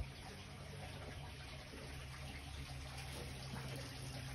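Steady, low-level running-water noise with a faint, even low hum underneath.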